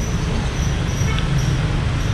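Steady low rumble of a gas stove burner running under a wok of chicken simmering in broth.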